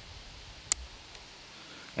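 Metal rivet cap pressed by hand onto its post through two layers of leather, snapping into place with one sharp click, followed by a faint tick.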